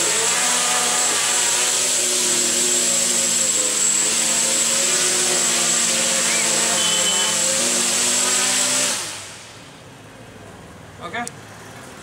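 Quadcopter's four electric motors and propellers buzzing in a hover, several steady tones wavering slightly with the throttle. About nine seconds in the motors wind down and stop, leaving quiet with a few small clicks.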